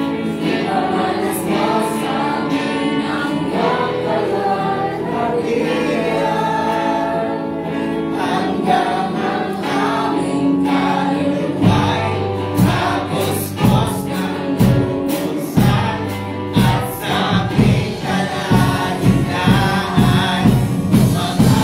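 Live worship band (bass guitar, electric guitar, keyboard) playing a gospel song while a group sings along. About halfway through, a regular low beat comes in under the singing.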